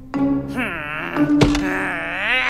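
A cartoon character's wordless, annoyed grumbling and groaning, with a single thunk about one and a half seconds in, over background music.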